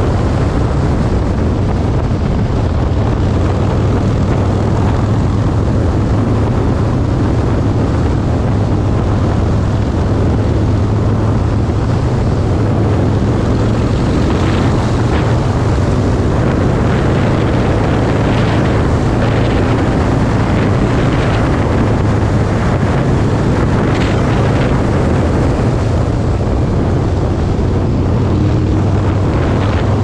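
Harley-Davidson Roadster's 1202 cc V-twin engine running steadily at road speed, with wind rushing over the microphone.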